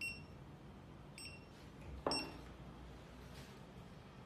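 RT234 OCR document reader beeping three times, short high beeps about a second apart, each marking a read of the ID card's machine-readable zone. A soft thud comes with the third beep.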